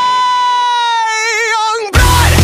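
Soundtrack song: a singer holds one long high note while the backing drops away underneath. The note takes on vibrato in its last half second and cuts off just before the end.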